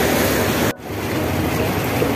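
Seaside ambience: a steady rushing noise, with a brief sharp drop in level about three quarters of a second in.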